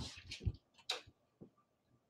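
A few faint, separate ticks of a stylus pen tapping a tablet PC's screen as marks are made, the clearest about a second in.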